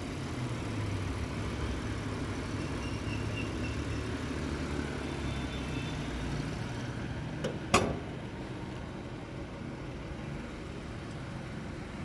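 The 2010 Mazda CX-9's 3.7-litre V6 idling steadily with a low hum. About eight seconds in, the hood shuts with a sharp thump, and the engine sounds quieter after it.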